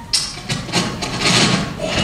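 Unwanted scraping, rubbing noise in several rough bursts, starting just after the beginning.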